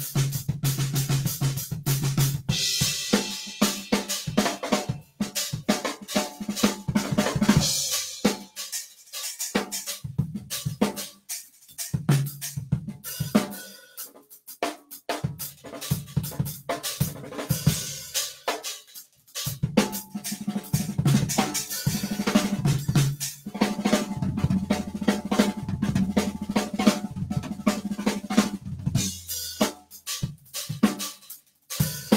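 Drum kit grooves played live: kick, snare and hi-hat patterns, with short breaks between the examples. The same groove is voiced on different pairings of the kit's three hi-hats and three snare drums, from the lowest-pitched pair for a fat low end to the smallest pair for a higher, tighter sound.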